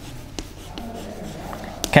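Chalk writing on a blackboard: scratching strokes with a few sharp taps of the chalk against the board.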